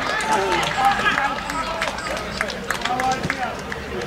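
Men's voices shouting and calling out across an open football pitch as players celebrate a goal.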